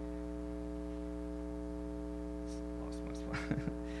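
Steady electrical mains hum from the sound system: a low drone with a stack of higher buzzing overtones. A faint voice sound comes near the end, the start of a laugh.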